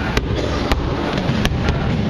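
Boxing gloves striking leather focus mitts: about five sharp pops in quick, uneven succession during a pad-work combination.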